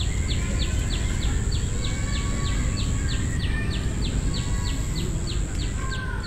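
Lakeside ambience: a bird repeats a short, high, downward-sweeping chirp at an even pace, about three times a second, over a steady high whine and a low background rumble. The sound begins to fade near the end.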